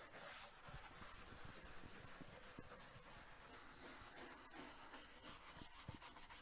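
Faint, steady scratchy rubbing of a hand tool on a wooden cabinet's old stained finish, working off built-up furniture polish before painting.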